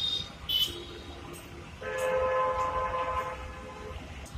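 A horn sounding: a quieter steady tone for about a second, then a louder, steady, rich held note lasting about two seconds.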